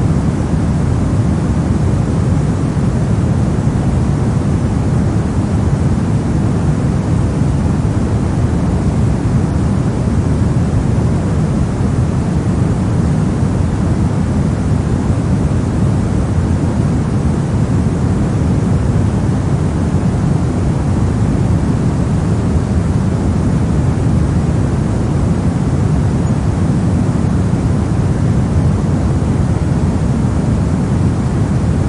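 Pink noise: a steady, unchanging rushing hiss, heaviest in the low end and thinning toward the highs.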